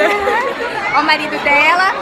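People talking close by, several voices at once, with the chatter of a crowd behind them.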